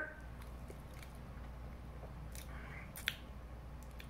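A man chewing a mouthful of soft banana quietly, with a short sharp click about three seconds in.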